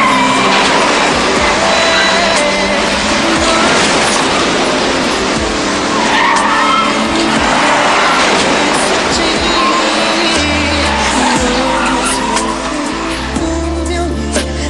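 A car's engine and squealing, skidding tyres over background music; the vehicle noise eases near the end, leaving the music.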